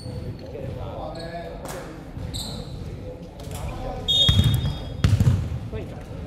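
Basketball bounced twice on a hardwood gym floor, heavy thuds about four and five seconds in that echo in the large hall.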